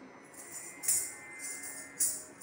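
Dancer's ankle bells jingling as her feet strike the floor, in steady strokes about a second apart.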